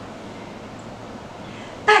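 Quiet indoor room tone: a steady background hiss with a faint low hum, and no distinct event.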